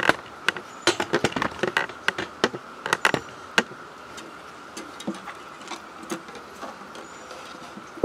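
Handling noise on the guitar and small hardware: a quick run of light clicks and knocks in the first few seconds, then only a few scattered taps, over a steady faint high hum.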